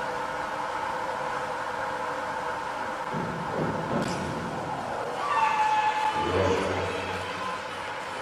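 Springboard diving from 3 metres: a low rumble as the board is loaded at takeoff, a short, sharp splash as the diver enters the water about a second later, then voices calling out from the pool deck over the steady hum of the indoor pool hall.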